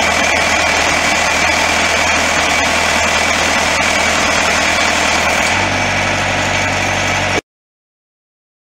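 The 48 hp Yanmar diesel engine of a tracked post driver, running steadily. Its low note grows stronger about five and a half seconds in, and the sound cuts off suddenly near the end.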